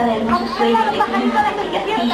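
Several voices talking over one another at once, children's and adults' chatter with no single speaker standing out.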